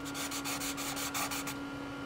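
Compressed charcoal stick scratching over painted paper in rapid short strokes, about ten a second, stopping about a second and a half in.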